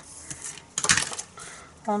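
A few sharp clicks and a short clatter, the loudest about a second in: a small hard plastic craft tool set down on a cutting mat while paper is handled.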